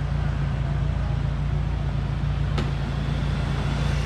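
A vehicle engine running steadily, a low, even hum with a constant tone. One short click about two and a half seconds in.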